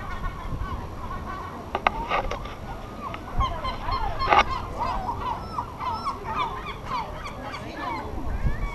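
Yellow-legged gulls calling close by: many short, overlapping honking and mewing calls. A few sharp knocks come through as well, the loudest about four seconds in.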